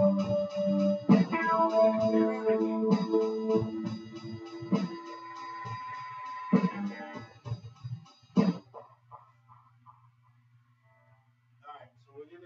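A recorded guitar loop with strong hits every couple of seconds, played back through a pedal-based looping rig. It cuts off suddenly about eight and a half seconds in, leaving only a low steady hum.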